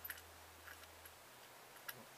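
Near silence with a few faint clicks as the plastic body and brass prongs of a Woodhead DIY plug are handled and worked loose; the sharpest click comes near the end. A faint low hum runs through the first second.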